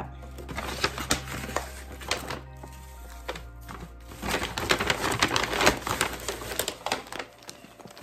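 Shredded paper gift-bag filler rustling and crackling as it is pulled out by hand, busiest in the second half, over background music.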